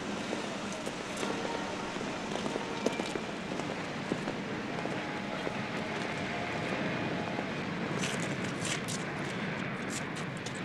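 Outdoor street ambience, a steady noisy background with a few light clicks and knocks, more of them near the end.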